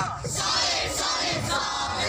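A troupe of men and women shouting a team chant together, loud and in unison. The voices swell to full strength about half a second in.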